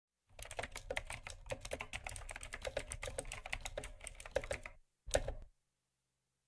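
Typing on a computer keyboard: a quick, uneven run of key clicks for about four and a half seconds, then a brief second flurry of keys about five seconds in.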